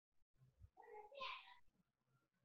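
A faint, short pitched cry lasting under a second, picked up from an unmuted participant's microphone and heard through video-call audio.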